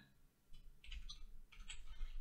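Faint computer keyboard typing: a few soft key clicks, starting about half a second in.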